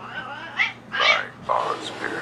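Wordless vocal sounds from a male cartoon character, in about four short, strained bursts with shifting pitch.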